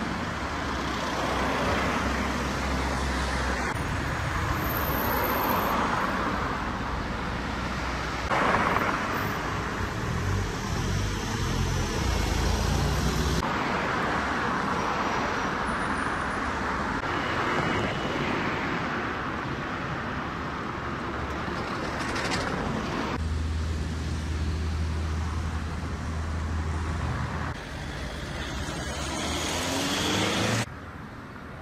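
Road traffic: cars passing on the street one after another, their noise swelling and fading, with a low engine hum. The background changes abruptly several times.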